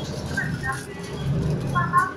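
Inside a moving city bus: the engine runs with a steady low hum under indistinct voices talking.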